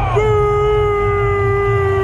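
A single voice singing one long held note, starting just after a previous note slides off and held steady throughout, amplified over the stadium's loudspeakers above a low crowd rumble.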